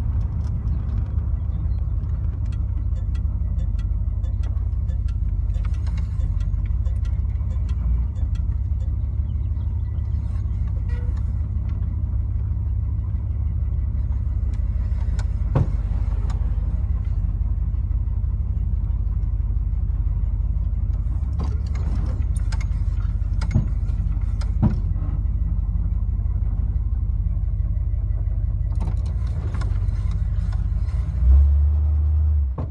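1972 Dodge Charger's engine rumbling steadily while cruising at low speed, heard from inside the cabin. A few brief sharp knocks are heard about halfway through and twice more later.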